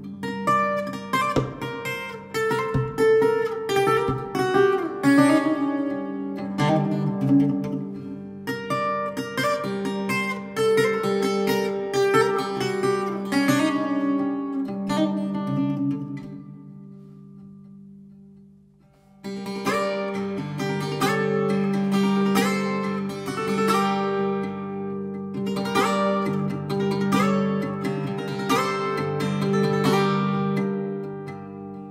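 Instrumental music led by a plucked Brazilian viola playing quick picked runs over long held low notes. A little past halfway it dies away almost to silence, then comes back in suddenly at full strength.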